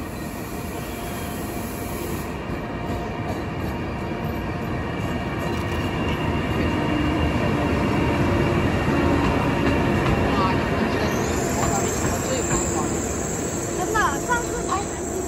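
A Chinese HXD1D electric locomotive running light slowly past. Its steady hum and the rumble of its wheels on the track grow louder to a peak about two-thirds of the way in. A few short squeaks come near the end.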